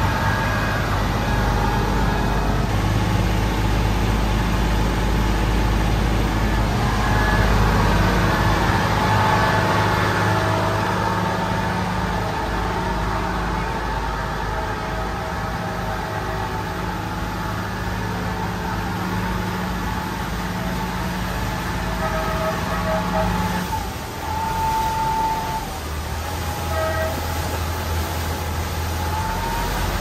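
Engine of a Chao Phraya express river boat running under way, a steady low drone that shifts in pitch a few times, with a clear change about 24 seconds in.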